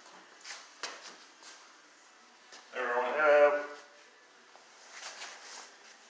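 A person's voice briefly, about halfway through, in a small room; otherwise a low quiet background with a few faint clicks.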